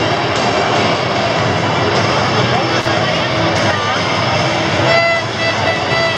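Large stadium crowd of football fans chanting and cheering in a dense, continuous wash of voices. About five seconds in, a horn starts sounding a steady held note over the crowd.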